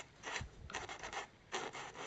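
The green abrasive side of a wet kitchen scourer scrubbing in short strokes, about two a second, across a painted model tank turret. It is chipping the top coat off a hairspray layer to show the primer beneath.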